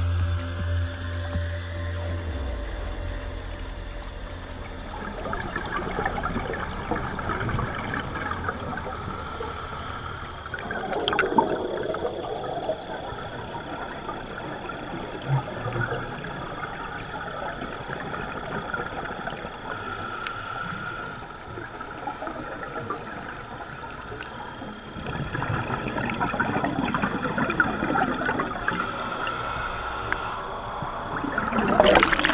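Underwater bubbling and rushing of scuba divers' exhaled air bubbles, picked up by a dive camera, swelling louder near the end as bubbles stream close by. A few seconds of music fade out at the start.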